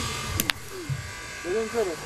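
Metal pétanque boules clacking twice in quick succession, about half a second in, over a steady hiss. Women's voices talk near the end.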